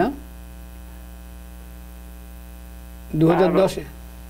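Steady electrical mains hum through a pause in the talk. About three seconds in, a caller's voice comes in briefly over a telephone line, with a thin, narrow sound.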